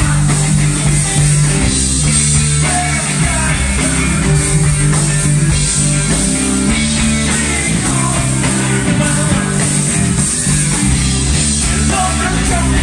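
Rock band playing electric guitars, bass guitar and drum kit, with a steady driving bass line.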